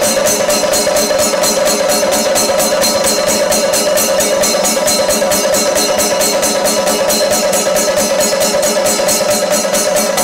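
Chenda melam: a group of Kerala chenda drums beaten with sticks, playing a fast, even, continuous beat, with hand cymbals (ilathalam) keeping time.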